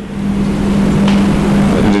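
A steady low hum with a constant pitch over an even rushing noise, loud and unchanging.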